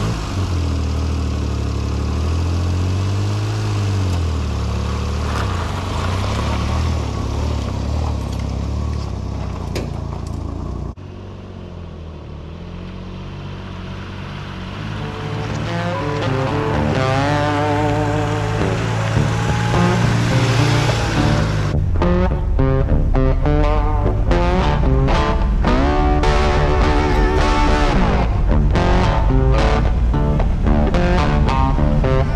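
A Daihatsu Hijet mini truck's engine pulls away with its bed fully loaded with dirt, its pitch rising and falling with the revs for about the first ten seconds. After an abrupt cut, guitar music comes in and grows louder, with a steady beat over the last third.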